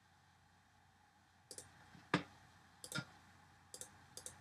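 Four faint computer mouse clicks, coming about a second and a half in and then every second or so, with the second click the loudest.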